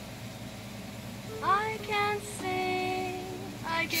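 Google Assistant's synthesized female voice, played through a Google AIY voice kit speaker, begins singing in reply to "sing me a song": a short gliding phrase about a second and a half in, then steady held notes, then the words "I can" near the end.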